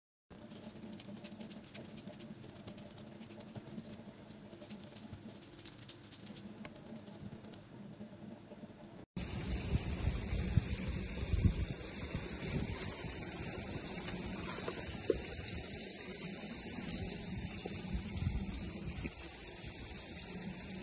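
Faint, fine crackling clicks, then after a cut a louder stretch of an Asian small-clawed otter being hand-fed meat: rumble and knocks of handling, with one brief high squeak in the second half.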